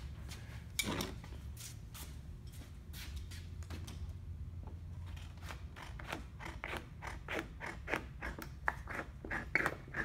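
Hand snips cutting 26-gauge sheet metal along a scribed line: a series of short crisp snips, sparse at first, then a regular run of about three a second through the second half.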